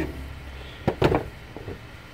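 A few short plastic clicks and knocks about a second in, from hands unplugging a connector and working the airbox loose in a car's engine bay.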